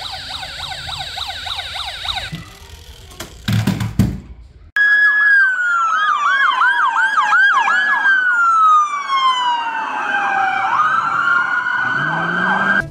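A toy police car's electronic siren yelping fast for about two seconds, then about five seconds in, real police sirens cut in loud: several at once, one holding a steady high tone, others yelping about four times a second, and one wailing slowly down then rising again near the end.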